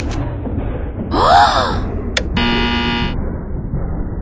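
Cartoon sound effects over a low background rumble: a short tone that rises and falls, then a click and a flat error buzzer lasting under a second, signalling that the process on the control panel has failed.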